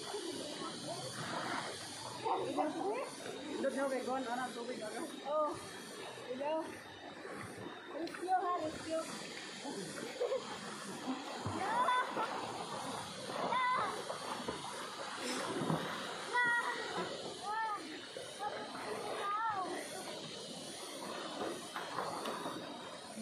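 Voices of several people talking and calling out over the steady rush of river water.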